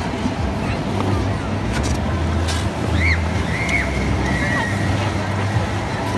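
Ice skate blades scraping and swishing over the rink, mixed with the steady chatter of a crowd of skaters in a large, echoing hall.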